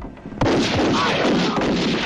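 Handgun gunfire in a film shootout: after a brief lull, a rapid, dense run of shots begins about half a second in and carries on.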